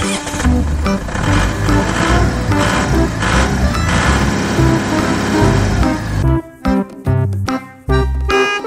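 A racing-car engine sound effect, a dense noisy roar, is laid over bouncy keyboard background music for about six seconds. It then cuts off abruptly, leaving only the music.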